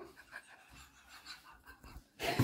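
Near silence, with faint breathing.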